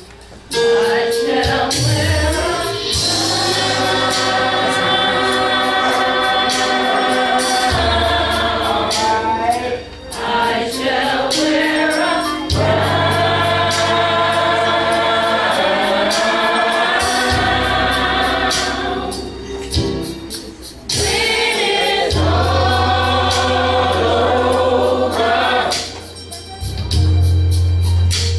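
Church gospel choir singing held chords in long phrases over a low bass accompaniment, breaking off briefly about ten and twenty seconds in.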